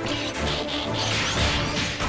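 Cartoon robot-transformation sound effect: a dense run of whooshes and mechanical clanks, swelling about every half second, as a helicopter changes into a robot. Background music plays underneath.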